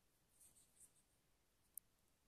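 Near silence, with faint scratchy rustling about half a second in and a single small click near the end: handling noise as the recording device is moved.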